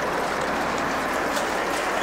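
Steady running noise of a tractor with a Claas Rollant 46 round baler, the engine ticking over just after a net-wrapped bale has been unloaded.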